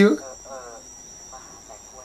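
A voice finishing a word, then faint speech, over a steady high-pitched whine of two unbroken tones.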